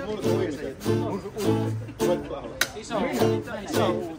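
Acoustic guitar strummed in a steady accompaniment, with a voice singing over it.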